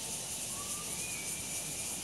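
Steady high-pitched hiss of outdoor background noise, with two faint, thin whistling tones about halfway through.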